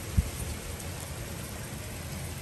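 Small hail pellets falling steadily, a fine even pattering of ice on the ground and a step, with one brief low thump just after the start.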